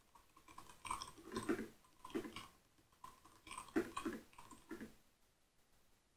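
Computer keyboard being typed on, faint, in several short runs of keystrokes with pauses between them.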